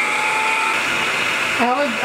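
Electric stand mixer running steadily at medium-low speed, its wire whisk beating egg whites in a stainless steel bowl until foamy; a steady motor whir with a high whine.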